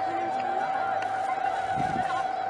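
A single long, steady, high tone held at one pitch over the murmur of a large outdoor crowd.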